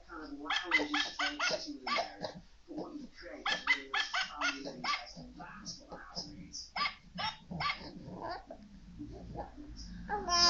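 A dog barking and yipping in quick runs of short, high barks, thinning out near the end.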